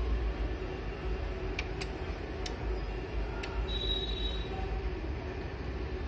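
Steady background hum and noise, with a few light clicks in the first half and a brief faint high whine near the middle.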